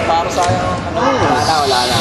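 People talking in a gymnasium while a basketball bounces on the court.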